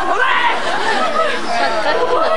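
A group of people talking and calling out over one another, several voices at once.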